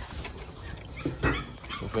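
A dog making faint excited noises at the sight of its water bowl, with a single short knock about a second and a quarter in.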